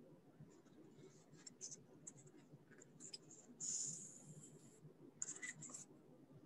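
Faint rustling and light ticks of yarn being handled while making a pom-pom, with one longer scratchy rustle of about a second a little past halfway.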